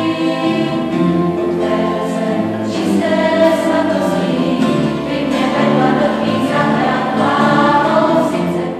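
Church choir singing, several voices holding sustained chords together.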